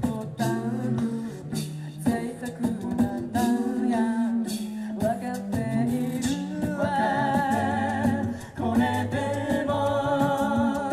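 A cappella vocal group singing live through a PA: a woman's lead voice over backing voices holding chords and a low sung bass line, the harmony filling out higher near the end.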